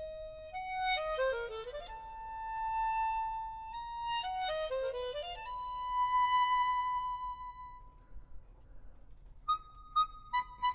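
Chromatic harmonica playing solo: a held note, two fast runs sweeping downward, then a long high note that fades away. After a short pause, quick detached notes begin near the end.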